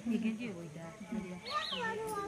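Indistinct voices of people talking, with a higher-pitched, wavering voice rising briefly near the end.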